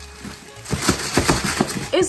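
Gift wrapping paper torn off a large cardboard toy box in a quick run of short rips, over background music.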